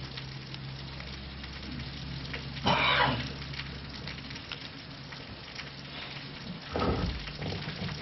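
Marker writing on a whiteboard, a faint scratching over a steady background hiss and low hum. There is a short louder noise about three seconds in and a low thump near the end.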